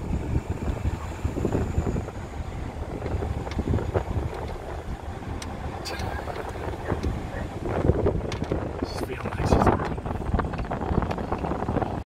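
Wind buffeting the microphone and road noise from a car driving with its window open, a steady low rumble. A couple of brief louder sounds come near the end.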